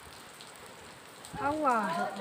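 Faint, steady hiss of light rain for the first second or so, then a person's voice calling out near the end.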